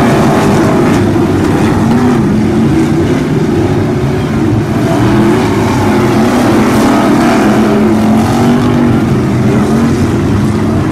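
Several pro stock race car engines running hard together, their pitch rising and falling as the cars accelerate and lift off around the dirt track. The engine noise is loud and continuous.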